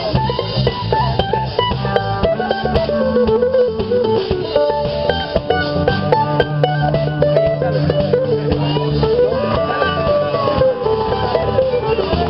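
Live country/bluegrass band playing: fiddle, electric guitar and mandolin over a drum kit.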